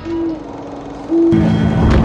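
Two short, low, steady tones about a second apart, then a loud deep rumble sets in with low droning tones just past halfway: soundtrack sound design.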